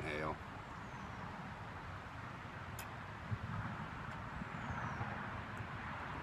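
Steady, quiet outdoor background noise with a faint click or two about three seconds in.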